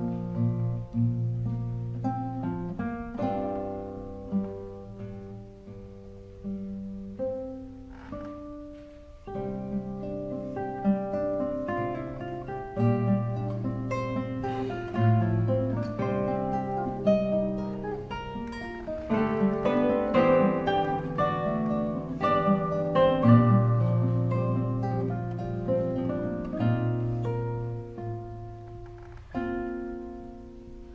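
Three classical guitars playing together in an ensemble, with many plucked notes overlapping. The playing grows softer a few seconds in and louder again past the middle.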